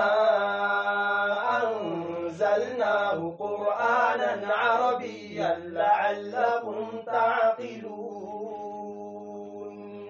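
A man reciting the Qur'an in the melodic tajwid style: a single voice rising and falling through long drawn-out notes with short breaths between phrases. It ends on one long steady note that fades over the last two seconds.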